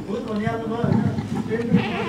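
A man speaking into a handheld microphone, his voice drawn out and wavering in pitch.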